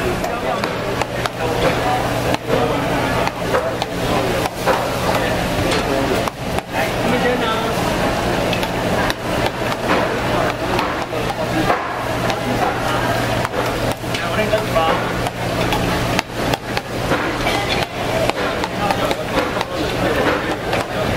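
Swordfish fish-paste strips deep-frying in a wide pan of hot oil, over a background of market chatter and a steady low hum, with scattered sharp knocks and clicks throughout.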